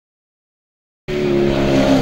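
Silence for about the first second, then a rally car's engine cuts in abruptly, running at a steady pitch over the rush of tyres on a muddy gravel stage.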